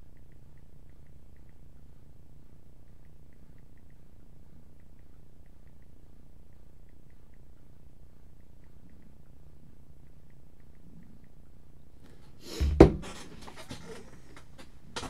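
A steady low hum with faint, regular ticking, then, near the end, one loud thump followed by crackling, rustling handling noise and a few sharp clicks.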